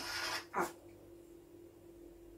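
Felt-tip marker stroking across a sheet of paper for about half a second as a letter V is written, then a single spoken word. After that the room is quiet with a faint steady hum.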